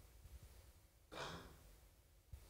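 A single breath out, close to a handheld microphone, about a second in, over near-silent room tone.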